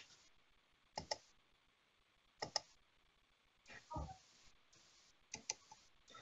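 Faint computer clicks, in quick pairs about every second and a half, over near silence: someone working a computer to shut down a YouTube stream.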